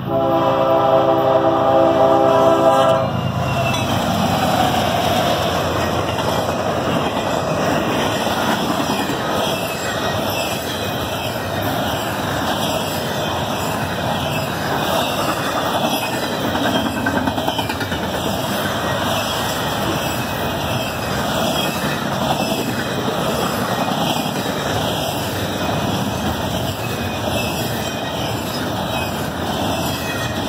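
Diesel freight locomotive's air horn sounding one long blast that cuts off about three seconds in. The locomotive then passes, followed by a long string of double-stack intermodal cars rolling by with steady wheel-on-rail noise.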